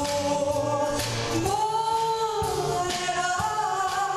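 A woman singing a jazz standard live, holding long, gently bending notes, over piano and light percussion accompaniment.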